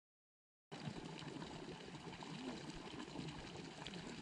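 Dead silence for under a second, then faint, steady outdoor background noise at the edge of a lake, an even hiss with a few small scattered sounds in it.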